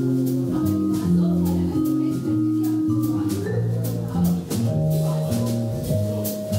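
Live jazz trio playing a waltz: vibraphone notes struck with soft mallets and left to ring, over plucked double bass, with the drums keeping time in light regular cymbal strokes.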